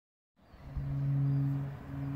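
A steady low mechanical hum, like a motor running, fading in during the first half second, with a couple of soft low thumps about a second in.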